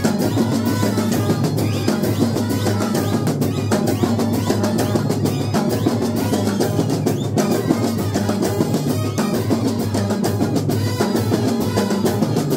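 A Kerala bandset playing loudly: trumpets and baritone horns hold a tune over fast, dense drumming on a frame of side drums and a bass drum.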